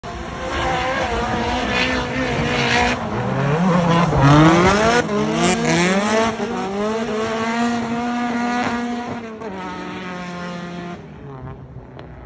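Two drift cars sliding in tandem, their engines revving at high rpm with the pitch repeatedly rising and falling as the throttle is worked, over the hiss and squeal of spinning tyres. Loudest as they pass about four seconds in, then fading away.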